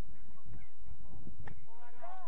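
Wind rumbling on the microphone, with a single sharp knock about one and a half seconds in, then short pitched calls starting near the end.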